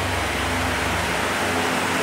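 Steady rushing background noise with a low hum underneath, the ambient din of a livestock barn; the resting cattle make no sound.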